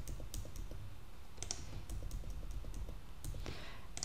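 Typing on a computer keyboard while numbers are entered: faint, irregular key clicks over a low steady hum.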